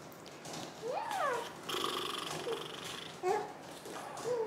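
Playful cooing between a mother and her young baby: one rising-and-falling coo about a second in, a buzzy trill in the middle, and a short rising coo near the end.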